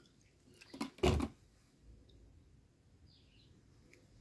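Distilled water poured from a plastic bottle into a plastic funnel in a sealed lead-acid battery's cell vent, topping up a dried-out cell. The pouring is faint, with one brief louder sound about a second in.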